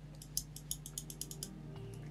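Computer mouse buttons and scroll wheel clicking, a string of faint, sharp, irregular clicks, over soft background music.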